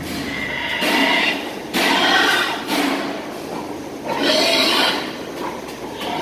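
Pigs squealing in a crated sow barn: three loud squeals of about a second each, near the start, about two seconds in and about four seconds in.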